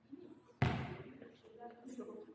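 A single sharp smack of a volleyball, echoing through a large sports hall, with faint voices around it.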